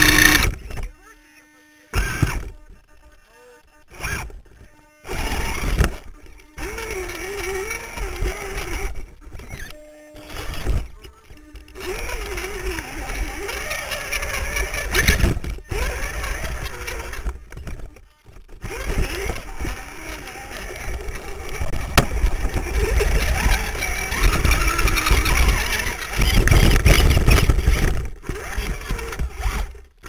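Dual Holmes Hobbies 35-turn hand-wound brushed electric motors and drivetrain of an RC rock crawler whining in short stop-start throttle bursts, then running more continuously as it crawls. People's voices are in the background.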